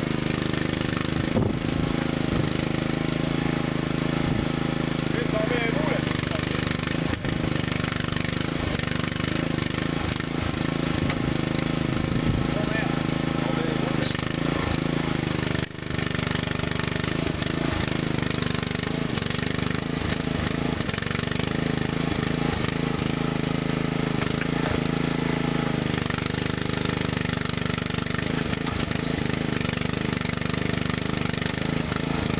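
Engine running at a steady speed to power an ATV-mounted mini excavator as it digs, with a few short clicks and knocks from the working arm and a brief dip in the engine sound about halfway.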